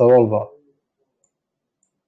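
A man speaking for about half a second, then near silence.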